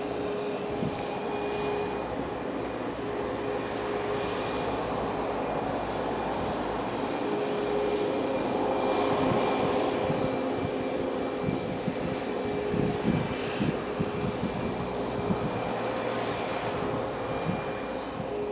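Boeing 737-8 MAX's CFM LEAP-1B turbofan engines running at idle: a steady jet whine with a held tone, swelling slightly about halfway through.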